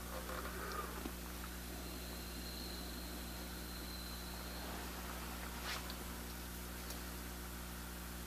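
Steady low electrical hum with a few faint, short clicks as a craft knife blade cuts through small rubber tabs joining tire letters.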